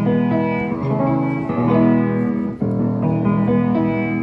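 A 4-foot-7 Gulbransen baby grand piano, worn and due for new hammers and strings, being played in full chords, with a new chord struck about two and a half seconds in.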